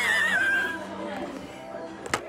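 A person's high-pitched, wavering vocal squeal, already under way, sliding down in pitch and trailing off under a second in, followed by quieter room noise.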